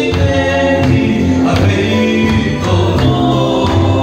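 A group of men and women singing a gospel hymn together.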